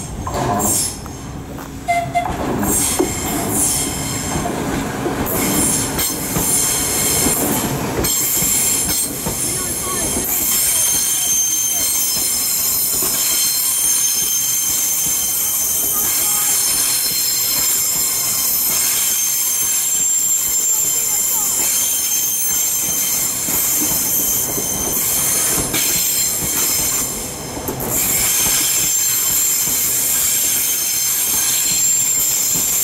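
Southeastern Class 395 high-speed electric multiple unit running slowly along a curved platform, with a rolling rumble and a steady high-pitched squeal from its wheels. It grows louder about two seconds in as the train reaches the camera.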